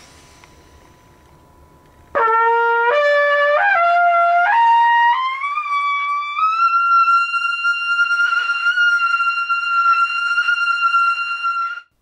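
Trumpet played with an upstream embouchure, entering after about two seconds of faint room hum. It climbs a rising arpeggio of about six slurred notes, then holds a long high note until it cuts off just before the end.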